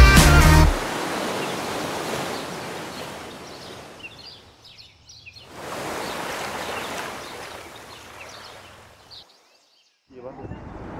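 A music track ends with a final beat under a second in, giving way to the wash of ocean surf that swells and fades twice, with faint bird calls in the middle and near the end. It drops to silence just before the end.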